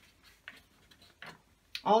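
A few faint, scattered ticks and crackles from a sheet of printer paper held up in the hands, then a woman's voice starting to speak near the end.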